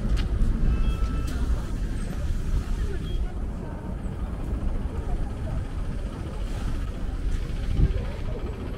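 Busy city street at night: steady traffic rumble from passing cars and buses, mixed with the talk of passers-by.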